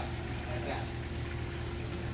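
Water splashing and trickling steadily in an aquaponics tank, over a steady low hum.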